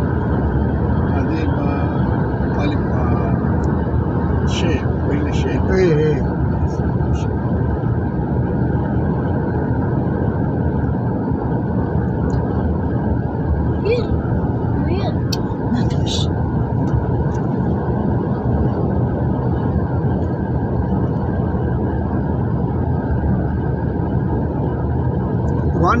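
Steady low rumble of road and engine noise heard from inside a moving vehicle, with faint voices now and then.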